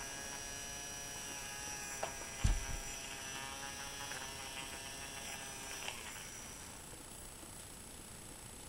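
Small handheld electric nail file running with a steady buzzing hum, which stops about six seconds in. A soft thump about two and a half seconds in.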